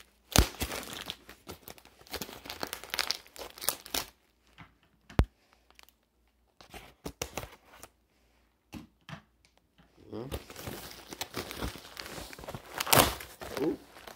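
Cardboard box packaging being pulled open by hand: crinkling and tearing of tape and wrapping with scattered knocks. It goes quieter for a few seconds in the middle, then busier, louder rustling and tearing fills the last few seconds.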